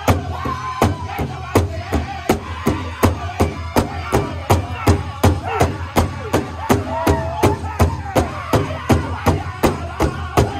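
A powwow drum group striking a large shared drum in unison with a steady fast beat, about three strokes a second, while the singers sing a powwow song over it.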